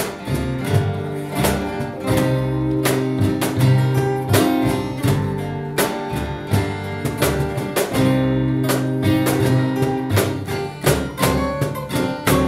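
Acoustic string band playing an instrumental passage with no singing: two strummed acoustic guitars over sustained upright bass notes, with a cajon keeping the beat.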